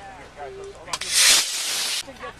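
A sharp click about a second in, then a model rocket motor igniting and hissing loudly for about a second as the rocket lifts off the pad.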